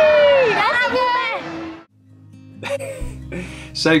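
Children's voices calling out in long, gliding shouts, cut off suddenly just under two seconds in. After a brief silence, strummed guitar music begins.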